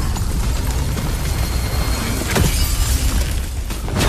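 Animated battle sound effects of ice cracking and shattering over a heavy low rumble, with a sharp hit a little past halfway, all under orchestral score.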